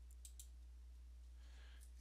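Two faint computer mouse clicks a fraction of a second apart, over near-silent room tone with a low steady hum.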